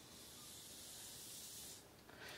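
AeroPress plunger pressed down on a ceramic mug: a faint, steady hiss as coffee and air are forced through the grounds and paper filter, cutting off just before two seconds in.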